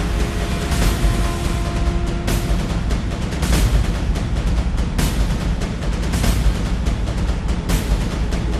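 Loud music with a heavy bass and repeated crashing hits, one every second or so.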